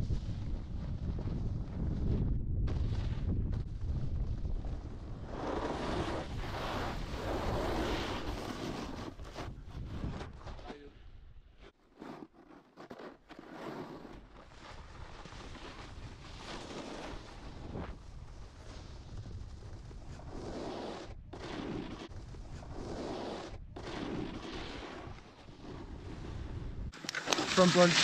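Snowboard sliding over packed snow, the board scraping and hissing, with wind on the microphone and a few sudden breaks in the sound.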